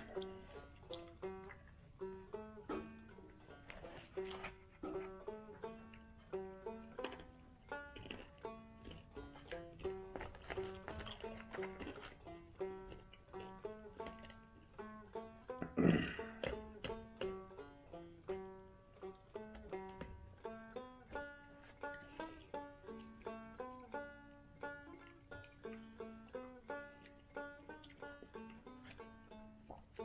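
Banjo music playing: a steady run of quickly picked notes, with one brief, louder burst of sound about halfway through.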